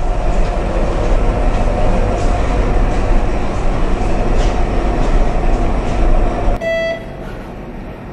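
Loud, steady rumbling noise with a steady hum through it, cutting off abruptly about six and a half seconds in. A short electronic beep follows.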